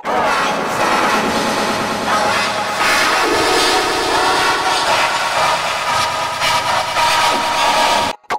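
A pop song parody stacked on itself thousands of times into a dense, distorted wash of noise, with no clear tune or words left.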